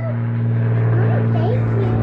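Steady low mechanical hum of a running motor, level in pitch and loudness throughout.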